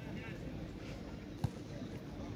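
Quiet outdoor beach background with faint distant voices, and one sharp knock about one and a half seconds in.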